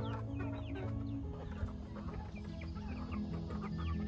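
Backyard chickens clucking, many short calls overlapping, over background music with sustained low notes that change chord about a second in.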